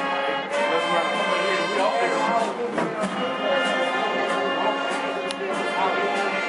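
Marching band playing in the stands: a brass section of trumpets, trombones, saxophones and sousaphone holding loud chords over drum and cymbal hits that keep a beat about twice a second.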